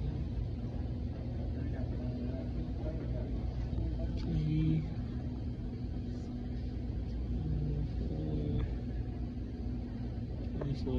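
A steady low hum or rumble from background machinery.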